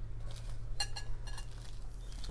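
A banana-leaf parcel of steamed pork being handled, with two brief clinks about a second in, over a steady low hum.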